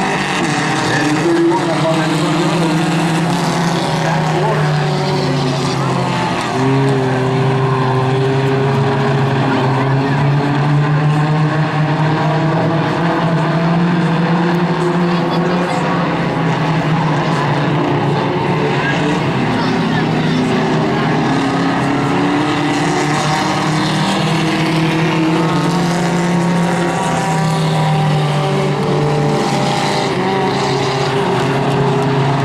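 A pack of small four-cylinder Hornet-class compact cars racing on a dirt oval, several engines running hard at once in a steady, layered drone whose pitches rise and fall as the cars lift and accelerate through the turns.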